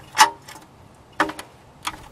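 Oil drain plug being worked loose by hand from a car's oil pan: a few short, sharp metallic clicks, the loudest just after the start and a cluster past the middle.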